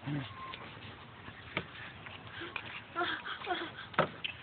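Yorkie scuffling with a hand air pump and its hose: faint rustling, with one sharp click about one and a half seconds in.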